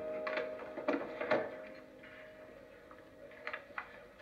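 Film soundtrack heard through a TV speaker: a soft sustained musical chord that fades away over the first two seconds, with several sharp clicks and knocks scattered through it, the loudest about a second in.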